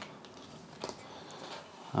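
Faint handling sounds as an aluminium box level is picked up off a desk: a light click near the start and a short knock just under a second in.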